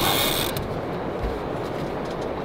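Heavy sturgeon rod's fishing reel clicking mechanically while a hooked white sturgeon is played.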